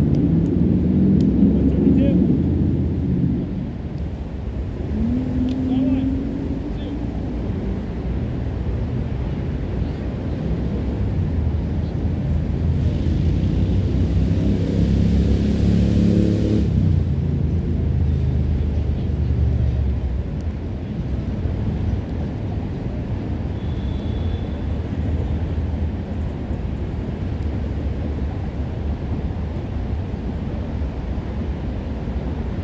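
Indistinct voices of players calling out across the field, heard over a steady low rumble; a brief hiss swells and fades around the middle.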